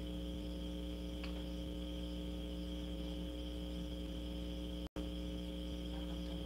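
Steady background hum made of several low tones, with a continuous high-pitched drone above it. There is a faint tick about a second in, and the sound cuts out completely for a split second near the end.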